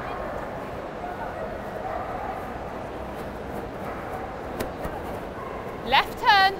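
Steady background hubbub of a large indoor arena. Right at the end, a German Shepherd Dog heeling beside its handler gives a short, high yelp that falls in pitch.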